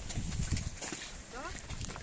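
Low rumble and irregular knocks from wind and handling on handheld press microphones. About a second and a half in, a short rising vocal sound.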